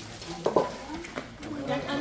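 Metal cooking pots clanking a few times as they are handled and scraped in a wash sink.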